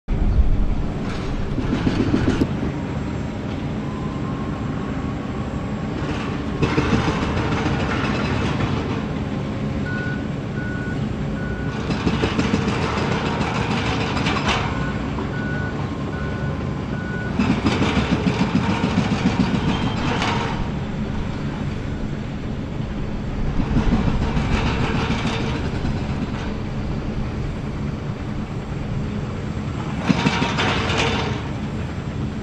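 Diesel engines of demolition excavators running steadily, with repeated bursts of crunching, breaking concrete every few seconds as a hydraulic crusher on a Cat 340F UHD bites into a silo wall. A machine's reversing alarm beeps twice in short runs.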